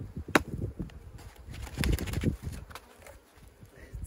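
Wooden-framed screened hive board being knocked against the hive box to shake the bees off it. One sharp knock comes about a third of a second in, the loudest sound here, and a cluster of knocks follows around two seconds in.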